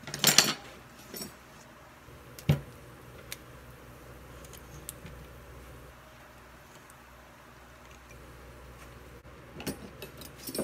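Clatter and knocks of kitchen items being handled on a table: a loud jangling clatter at the start, a smaller one a second later, a single sharp knock about two and a half seconds in, a few light clicks, then another short clatter near the end.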